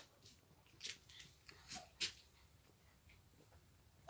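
Near silence, with a few faint, brief clicks and rustles about a second and two seconds in.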